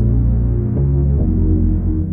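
Synth pad melody loop in A# minor at 146 BPM: sustained chords over a deep bass. A new chord strikes as the sound begins, and the bass note changes about three quarters of a second in and again just over a second in.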